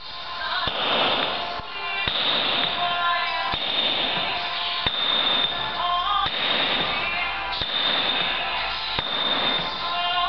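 Hand hammer striking a steel chisel into a stone block, a sharp ringing knock every second or so as chips break off. Background music plays underneath.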